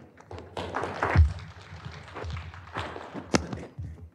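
Audience clapping at the end of a talk: a spread of irregular claps, with a low thump about a second in.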